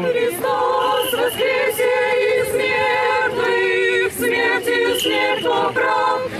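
A group of girls and young women singing an Orthodox hymn a cappella as they walk in a cross procession, holding notes and moving on together in a steady chant-like melody.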